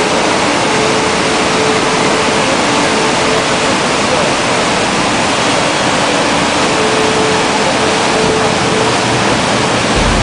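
Muddy floodwater of a desert wadi in spate rushing past in a fast torrent: a loud, steady, unbroken rushing noise.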